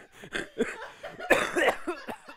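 A man laughing in short breathy bursts, with a louder, rough cough-like burst a little past halfway through.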